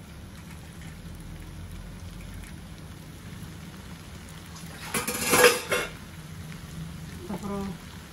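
Noodles frying quietly in a non-stick wok, with one loud clatter of dishes or utensils lasting about a second, about five seconds in.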